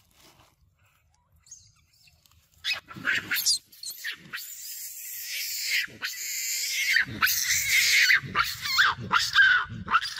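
Long-tailed macaques screaming, high-pitched and wavering. The calls start about three seconds in and become louder and nearly continuous through the second half.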